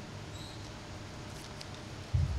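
Pause in the speech: a low steady room and sound-system hum, with a faint short high squeak about half a second in and light handling of paper sheets at the podium.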